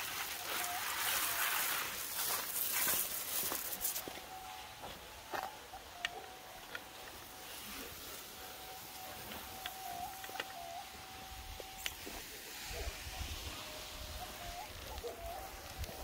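Water from a garden sprinkler spraying with a loud hiss for the first few seconds, then quieter. A faint, steady high tone runs through most of it.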